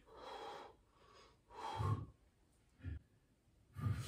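A woman breathing hard from the effort of pressing dumbbells overhead. There are three breaths: a long breathy exhale, a louder one with a little voice in it about a second and a half in, and a short one near the end.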